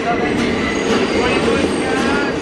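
Subway car running between stations: the steady rumble and rattle of the train in motion fills the car.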